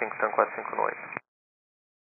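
Air traffic control radio transmission: a voice speaking Portuguese over the frequency, thin and narrow like a telephone line. It cuts off abruptly a little over a second in, leaving complete silence.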